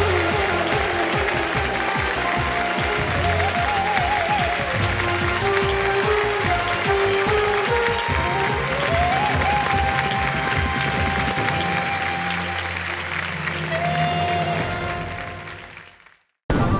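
Studio audience applauding over closing music with a melodic line, both fading out near the end.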